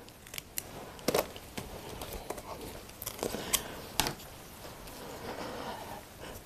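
Scattered light clicks, taps and rustles of gloved hands picking up and handling a cut strip of rubber flange and the tools beside it.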